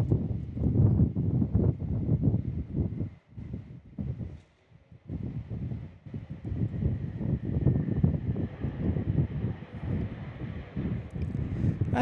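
Strong gusty wind buffeting the microphone, a low rumble that rises and falls and drops out briefly about three and five seconds in. Beneath it an Airbus A321 jet airliner takes off and climbs out, a faint steady high whine from its engines.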